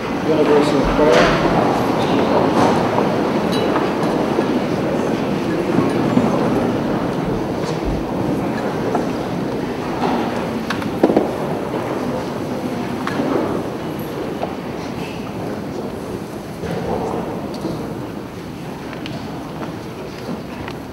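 Crowd noise from a congregation in a church: a dense hubbub of many people that slowly dies down.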